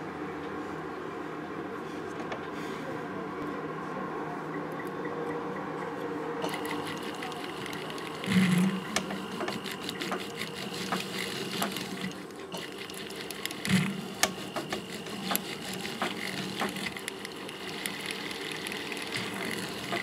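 Jeweller's powered handpiece running steadily as its pointed tip works the metal between the stones of a gold pavé ring, with sharp metallic ticks from about six seconds in. Two dull knocks, about eight and fourteen seconds in.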